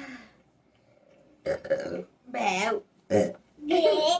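Burping after eating a lot of mango: a few short pitched, wavering sounds about half a second apart, with laughing near the end.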